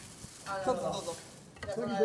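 A dust mop brushing across a wooden gym floor, a soft hiss, with voices starting about half a second in and again near the end.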